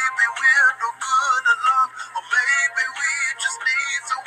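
A love song playing: a vocal line of sung notes that waver in pitch, over backing music. The sound is thin and tinny, with almost no bass.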